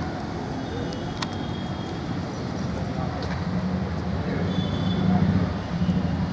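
Outdoor background noise: a steady low rumble with faint murmuring voices and an occasional sharp click.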